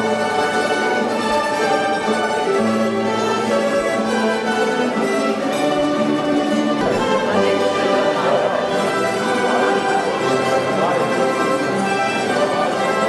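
Instrumental music led by violins, with held notes over a bass line, playing at an even level.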